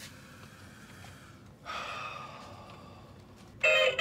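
A breathy sigh about a second and a half in, over quiet room tone. Near the end a toy electric guitar suddenly starts playing a loud electronic guitar tune.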